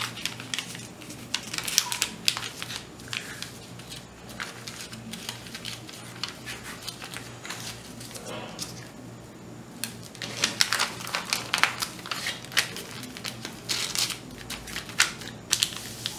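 Paper sewing pattern rustling and crinkling against cotton fabric as hands smooth it flat and push straight pins through it. The crisp handling noises come in two busy spells, a short one near the start and a longer one in the second half.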